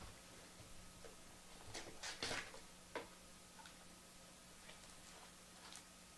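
Faint crinkling and light clicks of plastic shrink wrap being torn off a cardboard trading-card hobby box and the box lid being opened. The noises come in short bursts, most of them around two to three seconds in, with a few scattered ticks after.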